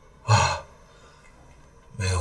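A man's single short breathy sigh about a third of a second in, over faint room tone.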